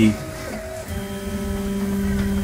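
Recycled Nema23 stepper motors of a large H-bot 3D printer whining steadily as the print head moves. One tone drops out and a lower one takes over about a second in, as the move changes.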